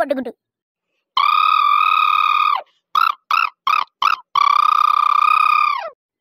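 Mobile phone ringtone: a long steady electronic tone, then four short beeps of the same pitch, then another long tone.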